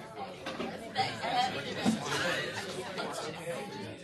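Background chatter: several people talking at once in a room, with no words standing out clearly.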